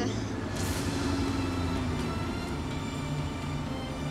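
A van's engine running steadily, with background music under it.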